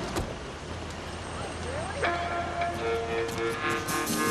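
Street-traffic noise with a low steady rumble. About halfway through, the theme music comes in with long held notes.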